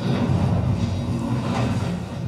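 Steady, deep rumble from a film's soundtrack.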